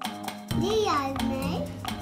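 A young child's voice over background music with a steady beat.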